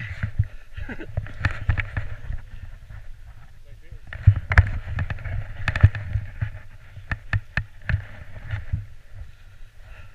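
Skis scraping and sliding over icy snow, with wind buffeting the helmet-camera microphone; sharp scraping clacks come several times in the middle as the skis chatter on the hard surface. A person laughs near the start.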